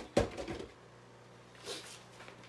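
A plastic plant pot set down in a stainless-steel kitchen sink: one sharp knock that rings briefly. A faint low steady hum follows.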